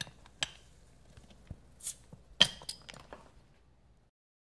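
A glass beer bottle's cap being levered off with a stainless steel bottle opener: light metal-on-glass clicks, a short hiss of escaping gas near the middle, then a sharp clink, the loudest sound, followed by a few lighter clicks.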